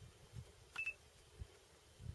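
A short electronic beep with two sharp clicks a little under a second in, typical of a digital camera's focus beep and shutter. Faint low thumps run under it.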